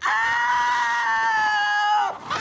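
One long, high-pitched scream from a film character's voice. It is held at nearly one pitch for about two seconds and sags slightly toward the end.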